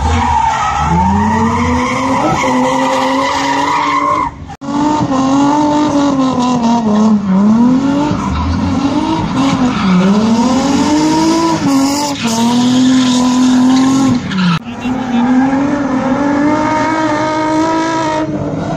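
Drift cars' engines held at high revs, pitch swinging up and down repeatedly as the drivers work the throttle through the slide, over a steady haze of tyre squeal. The sound breaks off briefly twice, about four and a half seconds in and again near fifteen seconds.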